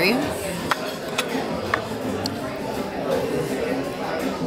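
Restaurant dining-room chatter of other diners, with a few sharp clinks of cutlery on dishes in the first half.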